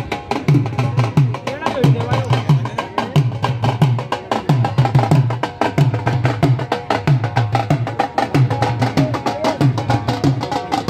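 Dhol drum played in a fast, driving rhythm, with deep bass strokes about every two-thirds of a second and quicker sharp strokes between them.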